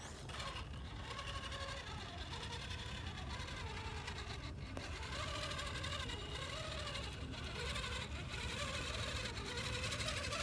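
Redcat Gen8 Axe RC rock crawler's electric motor and geared drivetrain whining under load as it climbs steep rock, the pitch wavering up and down with the throttle.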